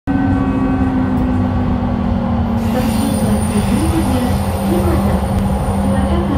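Light rail train running, heard from inside the front car: a steady loud rumble with a constant hum, the hum shifting lower about two and a half seconds in.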